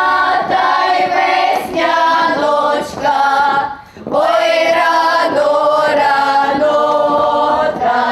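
A girls' folk choir singing a Ukrainian spring-calling song (vesnianka), with a short break between phrases a little before four seconds in.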